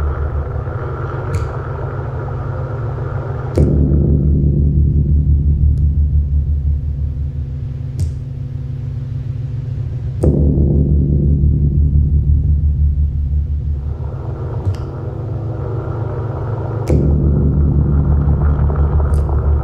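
Live electronic synthesizer music: a loud, low, dense droning chord. It swells back in abruptly about every six to seven seconds and fades away between, with a few faint clicks over it.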